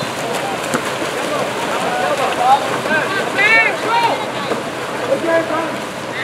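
Several voices shouting and calling at once over the continuous splashing of water polo players thrashing in the pool, with one higher shout about three and a half seconds in.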